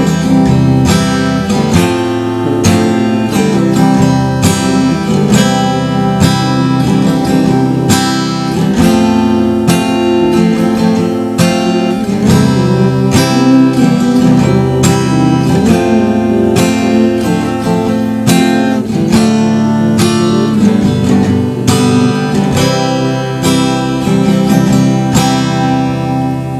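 Acoustic guitar strummed in a steady rhythm through a chord progression in C: C, F, C, C, F, C, F, Dm, G and back to C.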